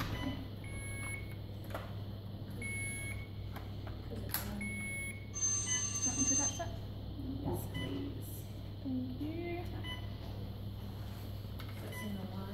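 Electronic beeping from bedside medical equipment: three short high beeps nearly two seconds apart, then a higher, louder steady tone lasting over a second, over a constant low hum.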